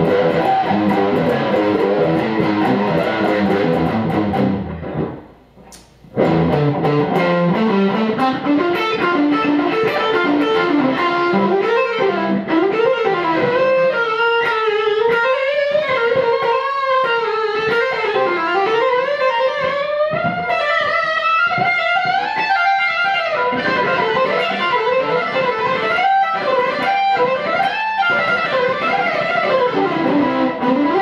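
Ibanez Prestige RG electric guitar played on its neck pickup with distortion through a Fender DeVille tube amp: a fast lead passage that stops briefly about five seconds in, then resumes with a rising run and long held notes with wide vibrato and bends.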